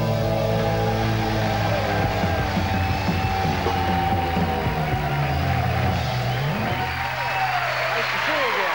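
Live rock band ending a song on a long held chord, its low bass note sustained until the very end.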